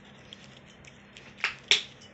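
Two sharp clicks about a quarter second apart, a little past halfway through, from a plastic bottle being picked up and handled.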